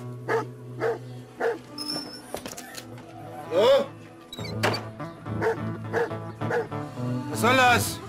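A dog barking over a low, steady music score: three short barks in the first second and a half, then louder, longer barks, the loudest near the end.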